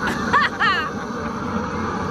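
People laughing: a few short, high-pitched bursts of laughter in the first second, over a steady background hiss.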